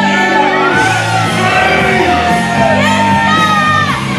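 Loud music with a steady, stepping bass line, with voices shouting and whooping over it in a large, echoing hall.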